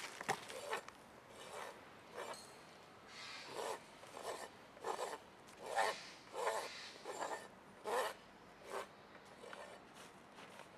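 Farrier's rasp filing a miniature zebu bull's hoof: about a dozen short scraping strokes in a steady rhythm, a little under one per second, as the trim is finished off.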